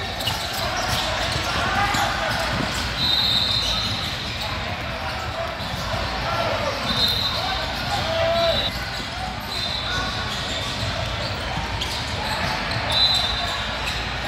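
Basketball game ambience in a large echoing sports hall: a ball bouncing on the court and a crowd of voices talking and calling out. A high-pitched squeak, typical of sneakers on the court, comes four times, each lasting about a second.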